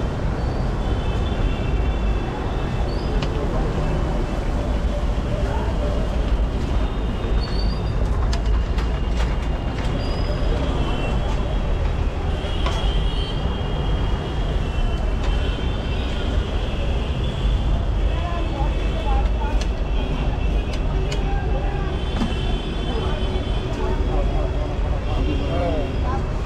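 Club kachoris deep-frying in a large kadai of hot oil, a continuous sizzle over a steady low rumble.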